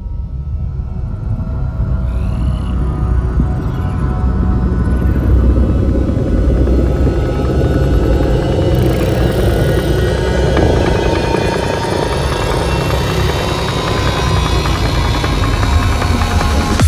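Dark psytrance intro with no beat yet: a low rumbling drone under a swelling noisy texture, with high sweeping glides coming and going. It fades in over the first couple of seconds and then holds loud.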